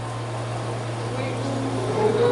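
A steady low hum fills a pause in the speech, with faint voice traces over it.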